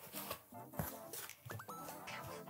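Quiet background music with a few short rising tones, and faint handling noises as cardboard and foam packaging is lifted out of a box.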